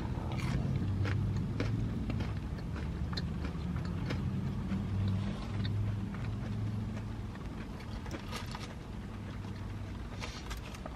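Chewing a crunchy breaded fried pickle: scattered crisp crunches and mouth sounds over a steady low hum from the car.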